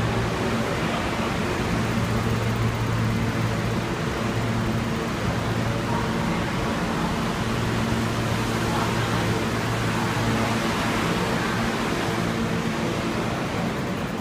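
Steady hiss and low drone of an R160A subway train standing in a station with its doors open, its air-conditioning and onboard equipment running. The hum fades a little and comes back a couple of times.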